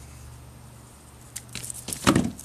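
Mostly quiet, with a low steady hum, then a few faint clicks in the last half-second or so as pruning shears are handled and put down on a plastic tarp.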